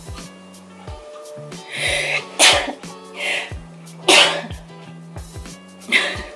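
A person sneezes twice, about two and a half and four seconds in, each time with a shorter breathy sound just before the sneeze. Background music with a steady beat plays underneath.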